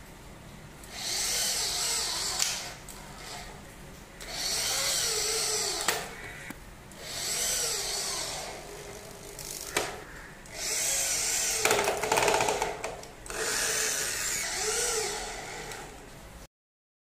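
Corded electric drill boring into a PVC frame, run in five short bursts of one to two seconds each, its motor pitch rising and falling with the trigger, with a few sharp clicks between bursts.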